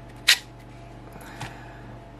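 A sharp click about a third of a second in as a knife is pulled free of its Kydex sheath's retention, then a much softer click about a second later.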